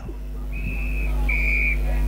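An umpire's whistle gives two short blasts, each a steady high note about half a second long, the second slightly louder, over a constant low hum.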